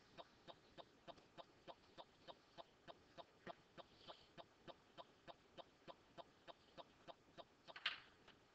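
Faint, even ticking, about three ticks a second, over near silence, with one brief louder sound near the end.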